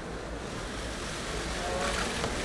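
Steady background noise of a large event hall: an even wash of room and crowd noise, growing slowly louder.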